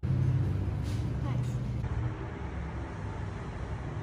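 Street ambience recorded on location: a steady low traffic rumble with voices in the background.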